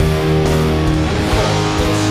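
Fender Blacktop Stratocaster electric guitar, tuned down a half step and played through an amp, with chords strummed with a pick and left ringing.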